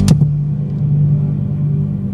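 A live church band ends a song on one sharp hit with a cymbal crash right at the start, then a low held chord rings on, slowly fading.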